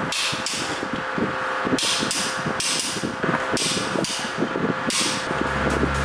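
Socket ratchet clicking as it tightens the U-bolt nuts on a leaf-spring U-bolt plate, in about five strokes of rapid clicks with the metal parts clinking. Background music comes back in near the end.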